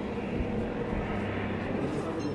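A steady, continuous engine drone with a low hum and no distinct shots or explosions.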